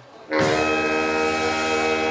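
Saxophone quartet (soprano, alto, tenor and baritone) with the band hitting a loud held chord that starts suddenly about a third of a second in, after a brief lull; it is the closing chord of the piece.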